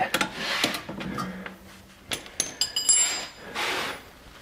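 Steel hand tools clinking and clattering as they are handled and set down, with a few short bright metallic rings about two to three seconds in.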